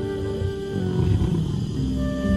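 A lion's low, rough growling under soft, sustained background music.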